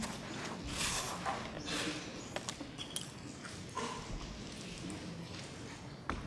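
Quiet room tone in a hall, broken by scattered faint knocks and rustles, the small noises of people shifting about while no one speaks.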